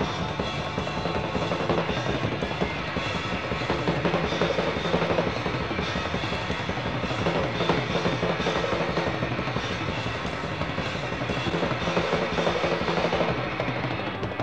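Rock band playing an instrumental passage: busy, rolling drums over sustained guitar and bass, at a steady level throughout.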